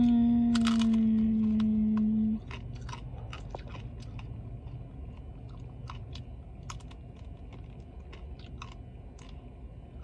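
A long closed-mouth "mmm" of enjoyment, held on one pitch for the first two seconds or so, then open chewing of a crunchy taco shell with many small crisp crunches.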